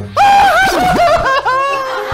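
A person's loud, high-pitched wailing cry, starting abruptly just after the start, its pitch sliding up and down and dipping sharply partway through: crying at a touching scene in a film.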